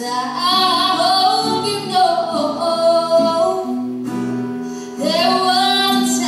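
A solo singer performing a slow song melody with wavering held notes over guitar accompaniment. The voice breaks off for about a second near two-thirds of the way through while the accompaniment sustains, then comes back in.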